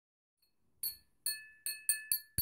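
A metal teaspoon tapping a small square plate: four clinks, coming a little faster each time, each with a brief ringing tone.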